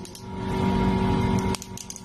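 A steady hum with a hiss under it. It drops out suddenly about a second and a half in, with a few clicks.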